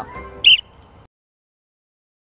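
A single short, high-pitched chirp about half a second in, over a fading tail of sound. The audio then cuts to silence about a second in.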